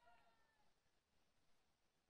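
Near silence: a faint pitched trace fades out in the first half second, then only faint hiss.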